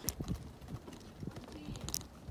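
Wheelchair being pushed along the pavement, giving a few sharp, irregularly spaced clacks and knocks over a low rolling rumble.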